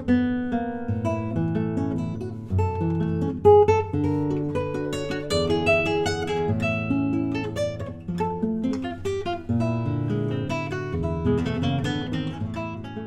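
Handmade nylon-string classical guitar with a solid Caucasian spruce top and American walnut back and sides, played solo fingerstyle: a continuous run of plucked notes over a moving bass line.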